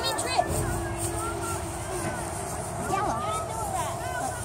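Children's voices and chatter in the background, fainter than the shouting around it, with a faint steady hum through the first second and a half and a low rumble about half a second in.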